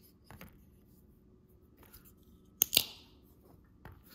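Folding pocket knives being handled and set down on a table: a few faint handling ticks, then two sharp clicks close together about two and a half seconds in.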